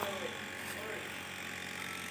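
Faint background voices over a steady low hum, in a lull between the presenter's sentences.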